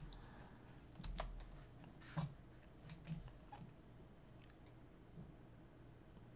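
Faint, scattered clicks of a computer keyboard and mouse, about half a dozen spread over a few seconds, against low room tone.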